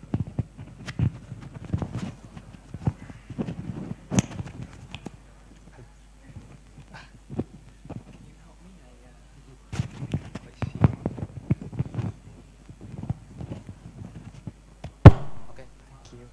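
Microphone handling noise: irregular low thumps, rubbing and clicks as a microphone is fitted and adjusted, with one sharp, loud click near the end.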